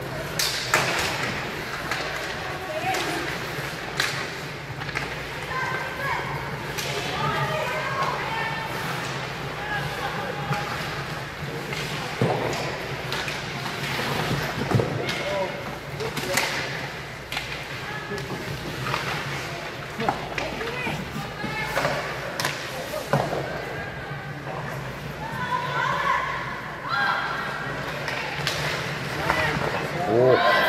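Ice hockey arena game sound: distant, unclear voices of players and spectators calling out, with scattered sharp knocks and clacks of sticks and puck against the ice and boards. A steady low hum runs underneath.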